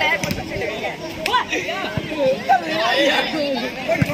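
Many boys' voices shouting and chattering at once, overlapping, from kabaddi players and spectators during a raid.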